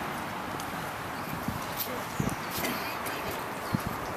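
Outdoor crowd ambience: a steady low hiss, with a few footsteps on paving and faint shuffling near the end.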